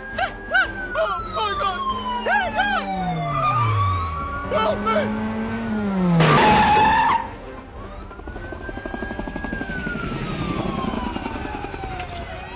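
Police siren wailing in long, slow sweeps of pitch, rising and then falling, with a loud burst of noise about six seconds in.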